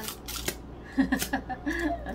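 A paper cocktail umbrella being opened by gloved hands: a brief crisp rustle and clicks, followed by a woman's short laugh.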